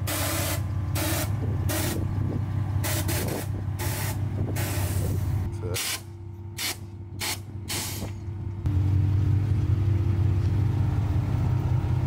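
Air suspension on a lowered 2007 Chevy Silverado being dumped: a series of short hisses as air is let out of the air bags to slam the truck to the ground. A steady low hum of the running engine underneath, louder once the hissing stops near the end.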